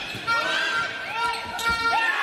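Indoor handball court: athletic shoes squeaking in short sharp chirps on the sports-hall floor as players run, with the handball bouncing on the floor, the loudest thud about 1.7 s in. Voices are heard in the hall.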